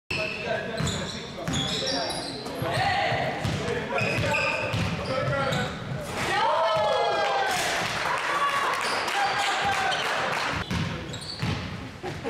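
Basketball game on a hardwood gym floor, echoing in the hall: the ball bounces, sneakers squeak in short high chirps, and players shout. A long call rises and falls in pitch around a dunk about six seconds in.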